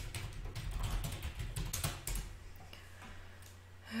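Typing on a computer keyboard: a quick, irregular run of key clicks for about two seconds, then a few sparser clicks.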